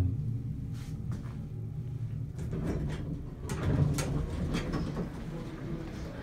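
A 1970s US hydraulic elevator with a low steady hum, then a few clicks and a louder sliding rumble about three and a half seconds in, as the car doors open.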